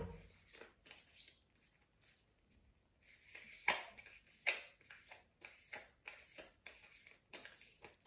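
A deck of tarot cards being shuffled by hand: faint, irregular slaps and rustles of card on card, nearly quiet about two seconds in, then a few sharper slaps around the middle.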